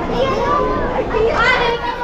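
Lively, high-pitched voices chattering and calling out over the steady background hum of a busy hall.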